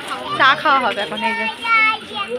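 People talking, with high-pitched voices among them and some drawn-out notes near the end.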